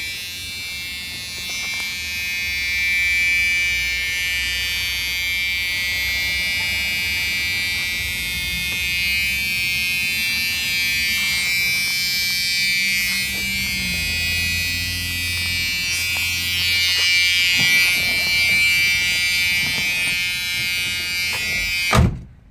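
Key-in-ignition warning buzzer of a 1978 Chevrolet Nova buzzing steadily with the keys in the ignition and the driver's door open. A low rumble joins in about two-thirds of the way through, and the buzzing cuts off suddenly at the end.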